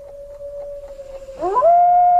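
Wolves howling: one long, level howl, joined about a second and a half in by a louder, higher howl that sweeps up and holds.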